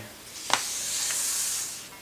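A hand rubbing across the paper of an open instruction booklet, pressing the pages flat: a sharp tap about half a second in, then a steady papery hiss that fades out after a second or so.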